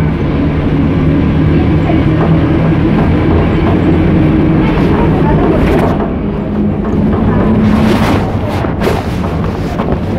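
City bus running, heard from inside the passenger cabin: a loud, steady engine drone and road rumble, with a few short rattles or knocks about halfway through and again near the end.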